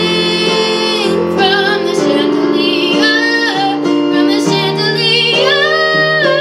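A young girl singing a pop song over an instrumental backing, holding long notes with vibrato.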